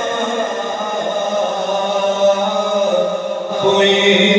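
A man chanting an Urdu naat (devotional poem) unaccompanied into a microphone, in long drawn-out melodic lines with a change of note near the end.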